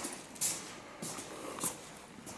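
Soft footsteps with clothing and handling rustle from someone walking with a handheld phone, a faint scuff about every 0.6 seconds.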